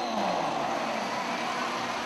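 Basketball arena crowd cheering: a steady wash of crowd noise with a few shouts rising and falling in pitch.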